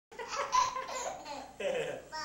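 A baby laughing, in several short high-pitched peals.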